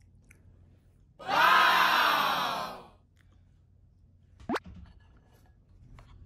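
A loud, drawn-out vocal sound, falling slightly in pitch, lasts about a second and a half, about a second in. Midway through, a spoon gives one brief, sharp squeak as it scrapes the ceramic bowl clean of soy-milk broth.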